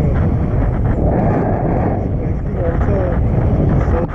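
Wind rushing over the camera microphone in paraglider flight: a loud, steady rumble that barely changes in level.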